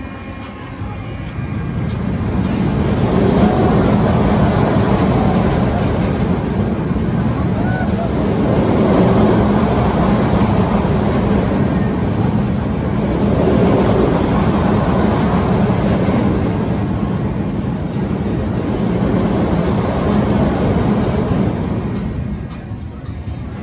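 Amusement park thrill ride whose car of seats circles a vertical ring track, running: a loud rushing sound swells and fades about every five seconds as the car swings around, over a steady low motor hum.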